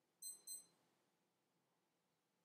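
Two quick high-pitched beeps, about a quarter second apart, in an otherwise near-silent room.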